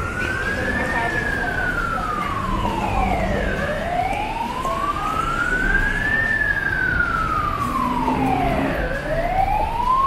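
An emergency vehicle's siren wailing in a slow rise and fall, each sweep up and back down taking about five seconds, over steady street traffic noise.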